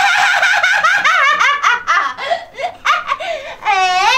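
A woman laughing loudly in high-pitched peals, one long run at the start and then choppier bursts of giggling.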